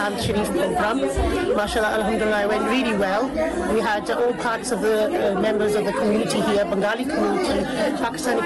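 Speech: a woman talking, with other voices chattering in the background.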